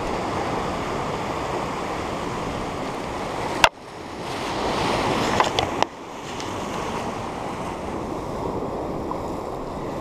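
Sea surf breaking and washing over shoreline rocks, a steady rushing that swells a little past the middle. A single sharp click about a third of the way in, and a couple of fainter clicks shortly after.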